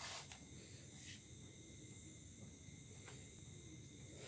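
Faint, steady chirring of crickets, with a brief soft splash at the water surface right at the start and a couple of fainter ticks later.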